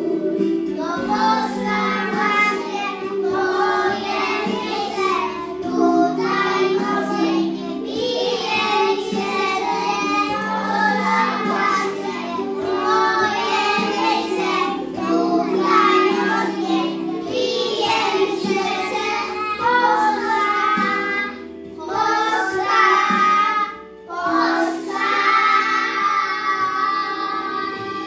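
A group of young children singing a song together over a steady instrumental accompaniment, with two short breaks between phrases near the end.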